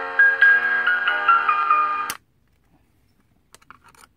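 Electronic melody played by a sound-synthesizer circuit board through its small built-in speaker: a tune of clean, stepped notes that cuts off abruptly about two seconds in. A few faint clicks follow as the melody chip is handled.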